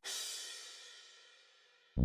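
A cymbal from a programmed pop drum track, played back from the DAW, struck once and ringing out, fading away over about a second.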